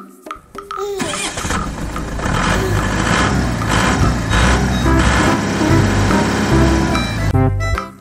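Car engine sound effect laid over the toy car's movement, starting about a second in and running loud until near the end, when light children's music comes back.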